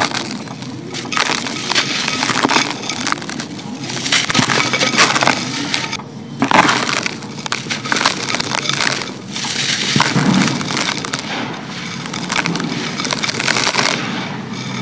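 Dry sand-cement bars crumbled by hand, gritty pieces and grains crackling and pouring into a clay pot, with two brief pauses.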